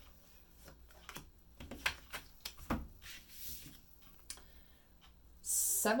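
Tarot cards being shuffled and handled: scattered soft snaps and rubs of card stock, with a brief sliding rasp about halfway through as a card is drawn from the deck.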